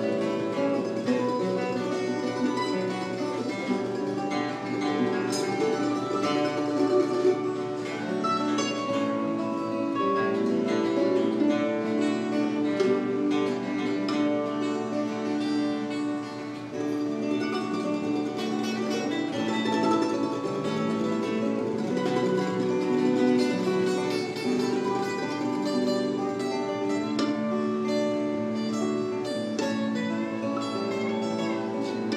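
Guitar music: an instrumental passage of plucked string notes with no singing, at a steady level.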